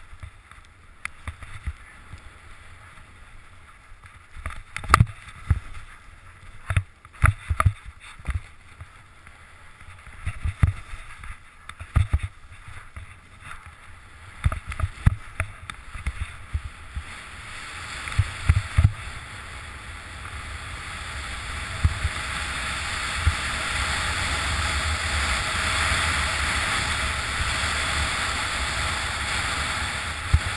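Skis running over snow, with wind rushing on a head-mounted camera's microphone. Scattered sharp knocks and thumps come through the first half, then a steady hiss builds from a little past halfway and holds to the end as the skis speed up on packed, tracked snow.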